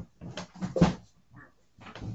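A man's short, low grunts of effort while bent over digging through a pile of books, the loudest just under a second in, with a few knocks and shuffles of books being moved near the end.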